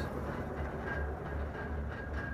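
LiAZ-677 bus engine idling steadily with a low, pulsing rumble, its air compressor unloaded by the newly fitted KAMAZ pressure cutoff valve and pumping air straight to atmosphere.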